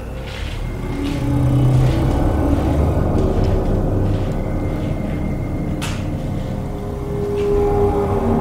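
Dark ambient background music: a low rumbling drone with held tones that shift from one pitch to another every second or so. A single sharp click comes about six seconds in.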